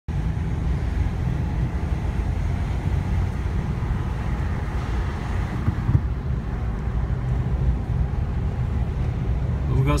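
Steady engine and tyre rumble of a car driving through a road tunnel, heard from inside the cabin. A man's voice starts right at the end.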